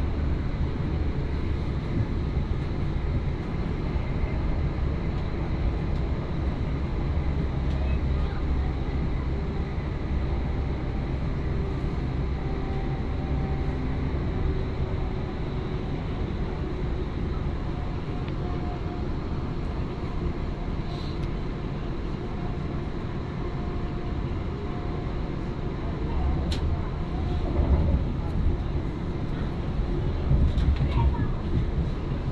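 Steady low rumble of a moving passenger train heard from inside the carriage, wheels running on the track, growing slightly louder near the end, with a couple of faint clicks in the second half.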